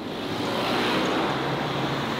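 Road traffic: a motor vehicle passing on the street. The tyre and engine noise swells to its loudest about a second in, then eases slightly.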